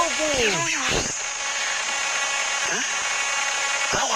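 A voice speaking with falling pitch for about the first second, then a steady background hiss from the recording's noise until speech returns at the very end.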